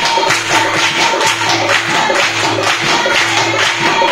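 Punjabi gidha folk music: a steady rhythm of handclaps and drum strokes, about three beats a second, with held melodic notes over it.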